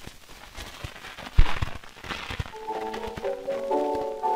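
Hiss and crackle of a 1911 shellac 78 rpm disc being played, with scattered clicks, the loudest about one and a half seconds in. About two and a half seconds in, the piano introduction of the acoustic recording begins under the surface noise.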